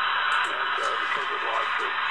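Shortwave receiver audio from an RTL-SDR tuned to the 40-metre amateur band around 7.181 MHz: a steady hiss of band noise with a faint, wavering single-sideband voice beneath it.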